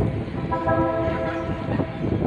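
A horn sounds one steady blast lasting a little over a second, over a constant background rumble.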